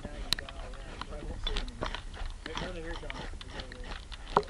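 Scattered clicks and knocks heard through an action camera submerged in its waterproof housing, with one sharp click about a third of a second in, and faint muffled voices in the middle.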